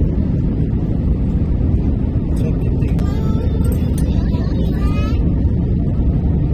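Steady low rumble of jet airliner cabin noise, engines and airflow heard from a window seat during the descent, with faint voices of people in the cabin about halfway through.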